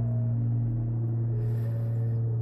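Background music: a sustained droning pad with a strong low tone and higher notes that change in slow steps.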